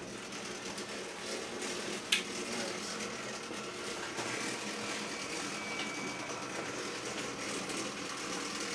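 Steady background hum and hiss, with one sharp click about two seconds in.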